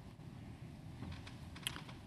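Faint typing on a computer keyboard: a few scattered light clicks, with one sharper click near the end.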